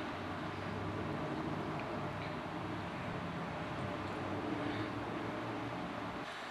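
Steady background noise: a faint, even hum and hiss with no distinct event.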